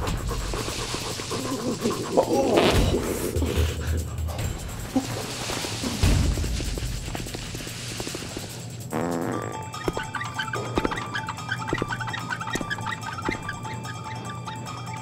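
A body dragged across a concrete floor, a rough scraping with a couple of thumps, then plucked music with short repeated notes starts about nine seconds in.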